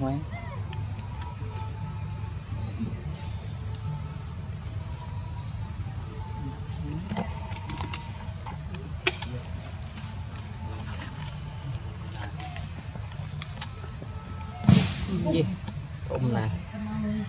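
Steady high-pitched insect drone in two bands, with a low rumble beneath. A single sharp click about nine seconds in, and a brief louder call or voice near the end.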